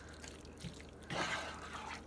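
Spatula stirring thick, creamy chicken pot pie filling with peas in a skillet: faint wet squelching, louder just after a second in.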